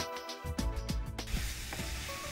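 Background music with a beat that cuts off about a second in, giving way to vegetables sizzling in a frying pan, with light clicks as they are stirred with a wooden spatula.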